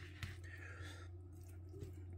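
Faint sounds of a metal fork stirring half-cooked creamy pasta in a plastic microwave tray, with a small click near the start over a low steady hum.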